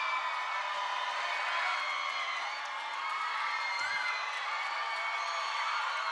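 Live audience cheering, with many overlapping high-pitched screams and whoops.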